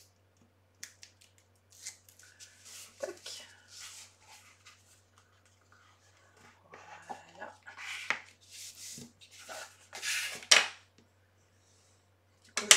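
Card and paper rustling and scraping as a paper photo frame is handled and its folded corner flaps are pressed and rubbed down with a bone folder. It comes as a series of short strokes, the loudest near the end.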